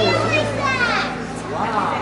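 A young child's high-pitched voice, excited and sliding up and down in pitch, loudest about a second in, over a steady low hum.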